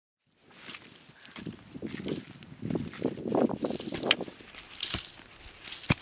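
A short-handled hand digging tool scraping and chopping into dry, crumbly soil while potatoes are dug out by hand, with loose earth crunching and scattering. There are a few sharp knocks in the last two seconds.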